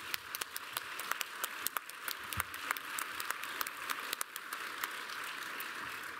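Audience applauding: dense, irregular hand claps that swell over the first seconds, hold steady, then thin out near the end.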